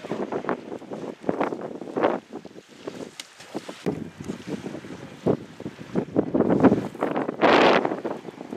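Wind buffeting the camcorder microphone in irregular gusts, the strongest near the end.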